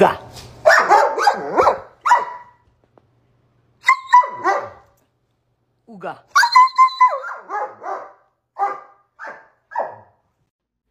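German Shepherd dog barking in repeated bursts in reaction to the word "ooga": a run of barks about a second in, another round about four seconds in, a longer run from about six seconds, and a few short barks near the end.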